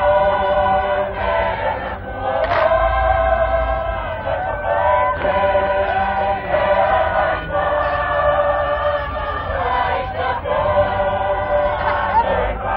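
A large massed chorus of Tongan lakalaka performers singing together, many voices holding long notes in several parts, with short breaks between phrases.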